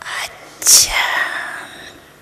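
A person whispering: a short breathy sound, then a loud hissing "sh" about two-thirds of a second in that trails off.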